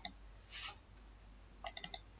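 Faint clicks of a computer mouse, with a quick run of several clicks near the end.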